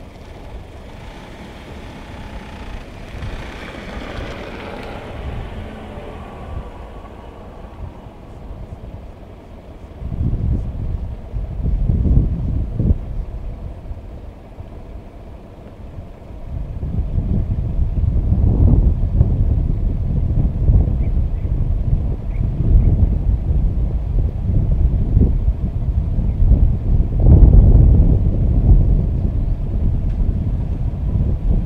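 A car rolling slowly past close by, its tyre and engine noise fading over the first few seconds. Then wind buffeting the microphone in irregular low rumbles that come in gusts, louder in the second half.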